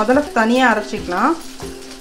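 A person's voice, its pitch gliding smoothly up and down, dropping away near the end.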